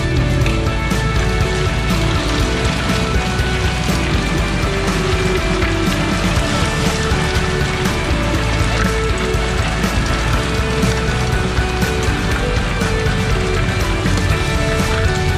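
Upbeat instrumental rock music with guitar, over a dense rattling noise from a bicycle and its handlebar camera jolting over cobblestones.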